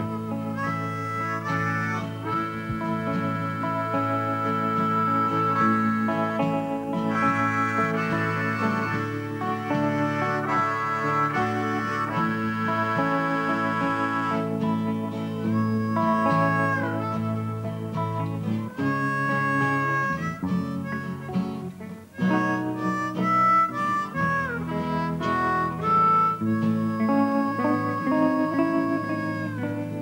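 Harmonica playing a melody of long held notes over acoustic guitar accompaniment.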